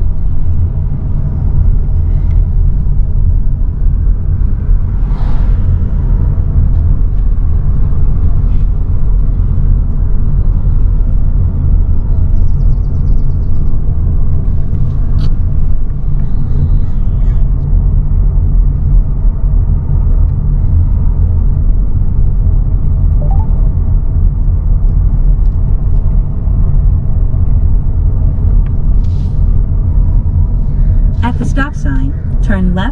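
Steady low rumble of a car's engine and tyres heard inside the cabin while driving slowly, with a few faint clicks and knocks.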